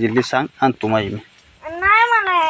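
A domestic cat meowing once near the end, a single drawn-out call that rises and then falls in pitch.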